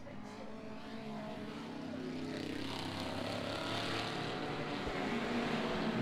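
Historic touring-car racing engines running at full throttle, growing steadily louder as the cars come closer.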